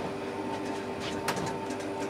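A large cardboard figure box being handled and tilted, giving a few light taps and scuffs over a steady hum.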